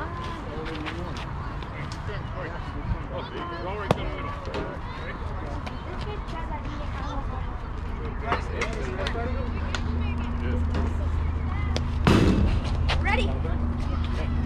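Scattered voices and a laugh, with a single sharp crack about four seconds in. A low steady rumble sets in past the middle and grows louder, and a brief loud burst comes near the end.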